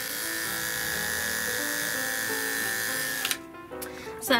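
Corded electric pet clipper running steadily, with a high, even buzz, as it shaves the fur under a dog's paw pads. It stops abruptly about three seconds in.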